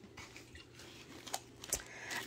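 Quiet room tone with a couple of faint short clicks in the second half.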